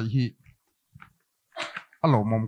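Speech only: a man speaking over a microphone finishes a phrase, then a pause of about a second and a half with a short faint breath, and his speech starts again at the end.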